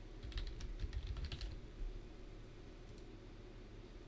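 Typing on a computer keyboard: a quick run of keystrokes in the first second and a half, then a couple of light clicks about three seconds in.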